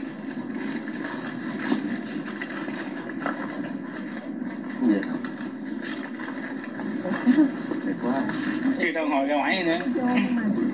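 Indistinct, muffled talking of several people, with one voice becoming clearer near the end.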